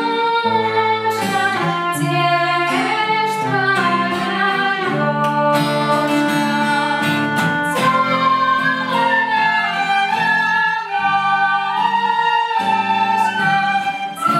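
A group of children playing a melody on sopilkas (small wooden Ukrainian folk flutes), accompanied by a strummed acoustic guitar and a violin.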